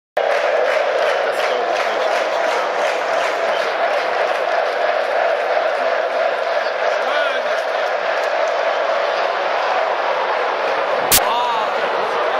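Football stadium crowd: a steady, dense wash of thousands of voices from the stands. A single sharp knock sounds near the end.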